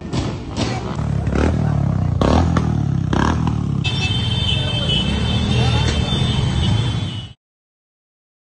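Many motorcycle and scooter engines running together at low speed in a slow procession, with scattered voices and short sharp knocks over the engine noise. A steady high-pitched tone joins about halfway, and the sound cuts off abruptly near the end.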